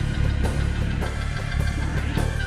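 Live band playing an instrumental soul-jazz passage: a drum kit keeps a steady beat, about two hits a second, under heavy bass and held keyboard chords.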